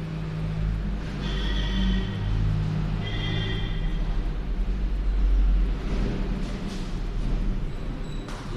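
Whiteboard marker squeaking in short high-pitched squeals as words are written, twice in the first half, with a few scratchy strokes later, over a steady low hum.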